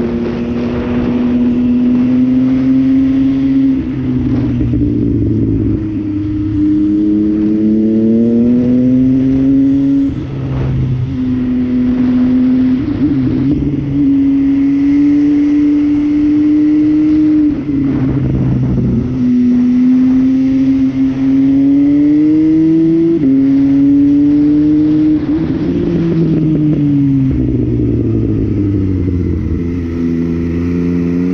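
MV Agusta Brutale motorcycle engine heard through its Corse three-outlet exhaust while riding, pulling up in pitch through the gears with a drop back at each gear change, then falling in pitch near the end as the throttle closes. Wind rush runs underneath.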